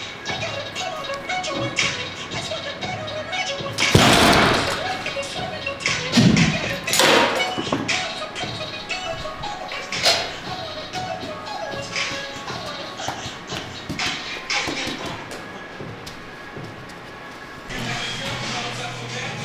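Background music with a wavering melody. About four seconds in, a loud, noisy hit that lasts about a second stands out above it, and a few louder swells follow.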